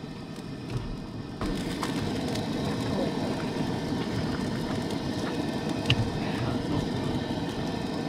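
A pot boiling and rumbling on a propane camp stove burner, getting louder about a second and a half in, with a few light metal clinks.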